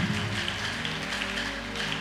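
Quiet background music of soft, sustained chords held steadily, with no beat or melody standing out.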